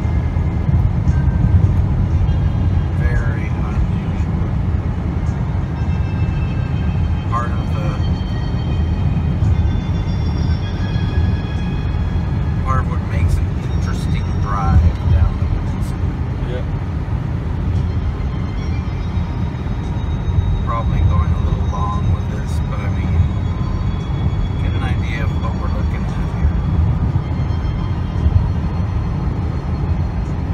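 Steady low rumble of a truck driving at highway speed, heard from inside the cab, with brief faint snatches of voice over it every few seconds.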